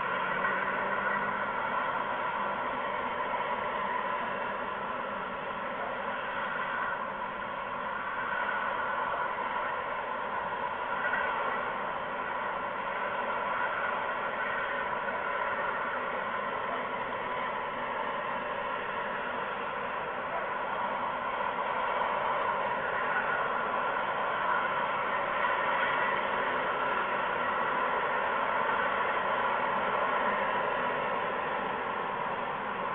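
A continuous, even hiss with no distinct calls, knocks or wingbeats, holding level throughout.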